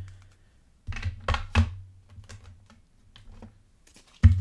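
Tarot cards and a deck being handled on a tabletop: sharp taps and knocks as cards are set down and the deck is tapped on the table. One comes at the start, a cluster about a second in, then fainter clicks.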